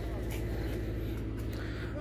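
Diesel generator running steadily: a low, even hum with a fast, regular pulse.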